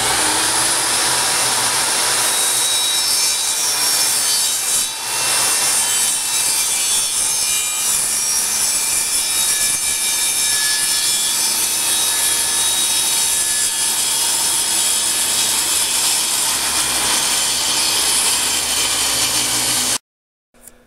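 Electric power saw with a circular blade running and cutting across a wooden shelf board, a loud steady whine with cutting noise that cuts off suddenly at the end.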